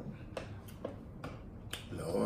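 A handful of faint, sharp clicks and taps, about six spread over two seconds: table-side eating sounds, most likely a knife and fork tapping on a plastic plate as sausage is cut.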